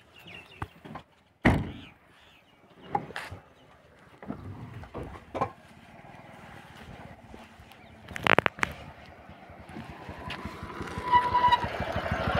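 A motorcycle engine approaching, growing louder over the last two seconds into a steady, evenly pulsing run. Before that there are a few separate knocks and bumps.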